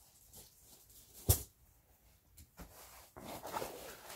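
Rummaging by hand in a backpack: one sharp knock about a second in, then rustling with small clicks near the end.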